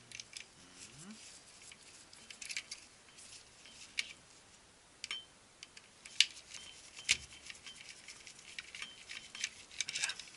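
Screwdriver backing a long screw out of the plastic housing of a Konica Minolta DR-311 drum unit: scattered small clicks and scrapes of metal on plastic. The sharpest tick comes a little after six seconds, another about a second later.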